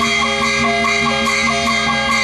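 Traditional Burmese music for a marionette dance: a melody of held notes stepping up and down over a quick, even beat of about four to five strokes a second.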